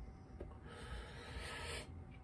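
Soft breathy hiss lasting about a second, from a man taking a hit on a disposable vape pen and breathing the vapor, with a faint click just before it.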